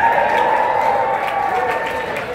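Banquet audience applauding, a dense roomful of clapping that eases off slowly.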